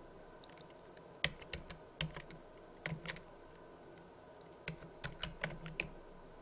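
Computer keyboard typing: faint keystrokes in three short clusters, the last cluster the busiest, with a pause between them.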